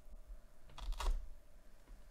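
Gloved hands handling a white cardboard box, with a quick cluster of cardboard clicks and scrapes about a second in.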